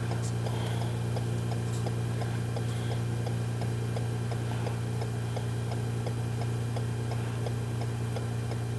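A steady low hum with a regular light ticking over it, about three to four ticks a second.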